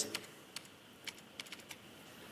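A few faint, sharp clicks of computer keyboard keys being pressed, about six spread over two seconds, as the keyboard is used to switch between open windows.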